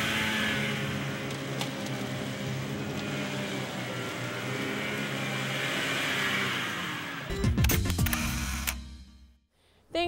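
The engines of a homemade twin-engine tracked ice-fishing vehicle run steadily as it drives over snow, a whine with a hiss, with music underneath. After about seven seconds a louder, deeper sound comes in for a second or two, then everything fades out.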